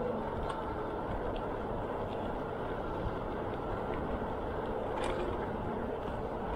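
Steady rumble of wind on the microphone and tyre noise from a bicycle rolling along an asphalt trail, with a few faint clicks.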